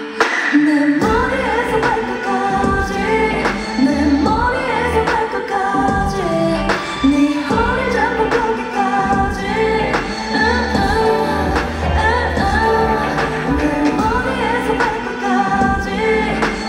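Live pop song with a woman singing over the backing track; a deep bass beat comes in about a second in.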